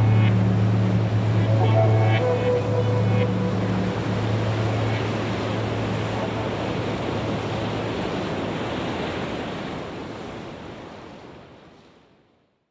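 The closing seconds of an ambient relaxation track. A low sustained drone and a few soft notes die away under a wash of surf-like noise, and the wash fades out to silence at the end.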